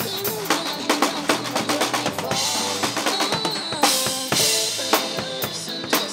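Acoustic drum kit played live over an instrumental pop backing track: a steady groove of kick, snare and rimshot strokes, with cymbal washes about a third of the way in and again about two-thirds through.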